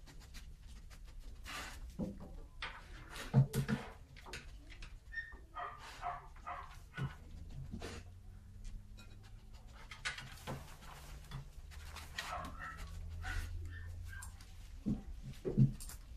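A flat-coated retriever sniffing in many short quick bursts while it searches for a scent, with scuffles and knocks as it moves and handles the table. The loudest knock comes about three and a half seconds in.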